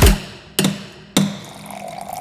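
Two sharp strikes of a mallet on a chisel cutting into a wooden rum barrel, about half a second apart, followed by a faint trickle of rum being poured into a glass.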